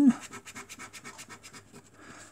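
A coin scraping the scratch-off coating from a scratchcard's panel in quick, short, even strokes, about ten a second.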